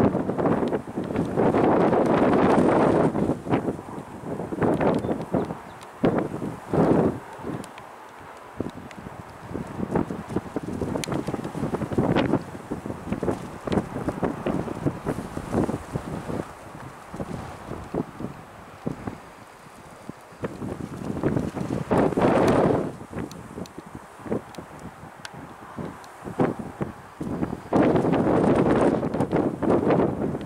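Wind gusting across the microphone in irregular surges, loudest in the first few seconds, again briefly a little past the twentieth second and near the end, and much quieter in between.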